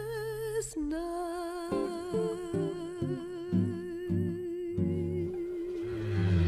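Music: a voice holds one long wordless note with vibrato, dipping slightly in pitch about a second in. From about two seconds in, plucked guitar notes play under it.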